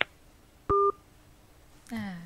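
A single short electronic telephone beep, two tones at once, lasting about a fifth of a second, on a caller's phone line.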